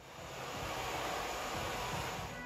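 A steady rushing noise with no clear pitch, swelling in quickly at the start and then holding even.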